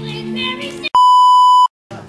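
Music with singing, cut off about a second in by a loud, steady electronic beep near 1 kHz lasting under a second, followed by a brief dead silence.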